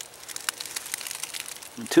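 Light crackling and rustling of dry leaf litter on the forest floor, with scattered small clicks and one sharper click about half a second in.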